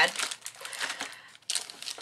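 Clear plastic packaging of craft packets crinkling as the packets are picked up and shuffled aside by hand, with a brief louder rustle near the end.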